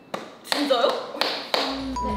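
A sharp tap just after the start, then a woman's brief high exclamation set off by two more sharp hits, with background music coming in near the end.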